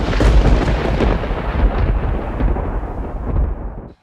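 A loud, deep rumbling noise that starts suddenly, slowly thins out and then cuts off abruptly at the end.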